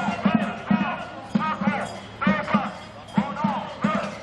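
A drum beaten in quick irregular groups of two or three strokes, with marchers' voices chanting and calling over it.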